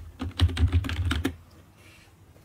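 Computer keyboard typing: a quick run of keystrokes for just over a second, then it stops.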